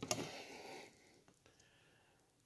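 Handling noise as a large Bowie knife is picked up off a cloth-covered table: a sharp click at the start, a short soft rustle, and a faint tick a little over a second in.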